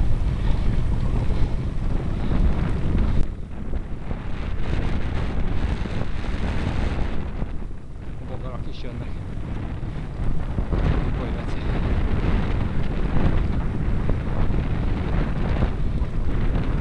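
Wind buffeting the microphone of a camera carried on a moving bicycle: a steady low rumble that rises and falls.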